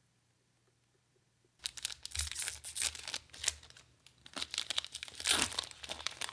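Foil wrapper of a Magic: The Gathering booster pack crinkling and tearing as it is pulled open by hand, starting about a second and a half in after near silence.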